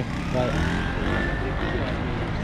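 Street traffic: a steady engine rumble with one engine's whine rising slowly in pitch, like a vehicle accelerating away. A brief voice fragment comes about half a second in.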